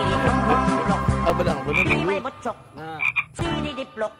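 Frogs croaking in short repeated calls, about one every second or so, while background music drops away about halfway through.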